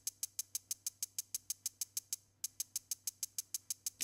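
Akai MPX8 sample pad playing one drum sample as straight sixteenth notes, about eight short, bright hits a second, triggered over MIDI by a Groovesizer sequencer. A little after two seconds in, the hits drop out briefly for a step or two: the MPX8 is skipping steps, which the player puts down to its MIDI input being a little borked.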